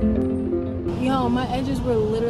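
Background music of plucked acoustic strings that cuts off abruptly about a second in, followed by a woman's voice talking.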